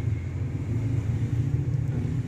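A steady, low background rumble with a faint hum, unchanging throughout.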